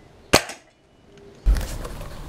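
A single shot from an Anschütz Hakim spring-air rifle: one sharp crack with a brief ring, a third of a second in. Louder outdoor background noise comes in about a second and a half in.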